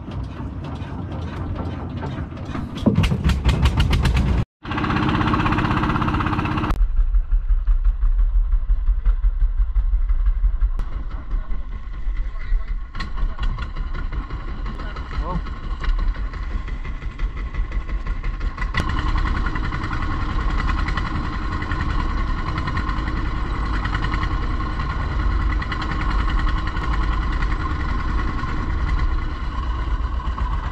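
Engine of a small wooden outrigger boat running steadily under way, with water rushing along the hull; the engine note grows brighter about two-thirds of the way through.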